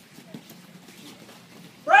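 Low background in a gym with one faint thump about a third of a second in, then near the end a loud, drawn-out shout of 'Break!' falling in pitch: the referee's call to halt the sparring exchange.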